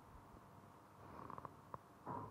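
Near silence: faint room tone, with a few soft ticks and then a single sharp mouse click near the end.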